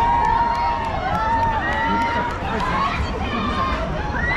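Riders on a swinging pendulum fairground ride shouting and screaming, several voices overlapping in long rising-and-falling calls over a steady low rumble.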